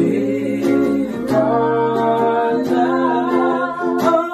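A man and a woman singing together in harmony with guitar accompaniment, holding long sustained notes.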